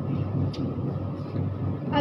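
Steady low background rumble, with one short click about half a second in.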